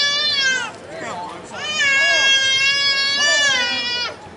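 A small child crying close to the microphone in two long, high wails, the first trailing off under a second in and the second running from about a second and a half in, each sagging in pitch as it ends.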